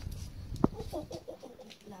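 Chicken clucking: a quick run of short clucks, just after a single sharp click.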